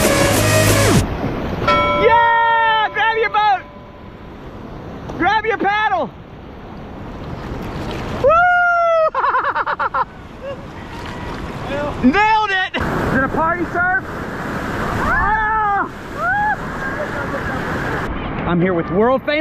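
Rushing whitewater around a kayak, growing steadily louder toward the end as the boat runs into rougher rapids. About five drawn-out shouts or whoops rise and fall in pitch over the water noise. Music fades out about a second in.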